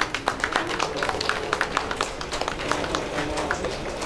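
A small group of people clapping, uneven claps coming several times a second.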